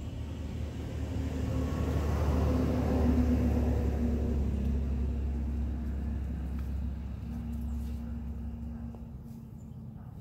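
A motor vehicle passing by: a low engine rumble that swells to its loudest about three seconds in, then slowly fades away.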